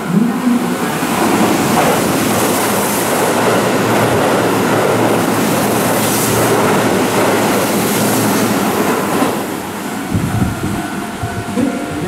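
Keihan 3000 series electric train running through the station at speed without stopping: a loud, steady rush of wheels on rail with surges as the cars go by, dying away about ten seconds in.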